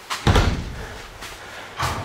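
A door banging shut with a heavy thump about a quarter second in, then a second, lighter knock near the end.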